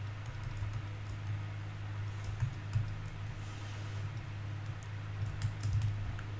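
Scattered clicks and taps of a computer keyboard and mouse, bunched about two and a half seconds in and again near the end, over a steady low hum.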